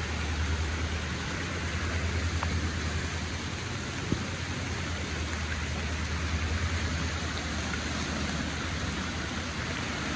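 Steady rush of a flood-swollen creek running fast over its banks, with rain falling, an even noise with a deep low rumble underneath. One short knock about four seconds in.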